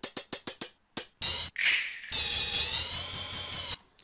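Playback of BandLab R&B Creator Kit V.1 sample pads, pitch-bent with the Alesis V125's pitch wheel: a quick run of short percussive hits, then a long held pitched sample whose pitch wavers. It cuts off suddenly near the end.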